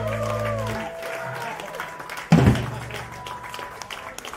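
The band's closing chord on electric guitars and bass rings out and cuts off about a second in. Light applause and crowd voices follow, with a single loud low thump about halfway through.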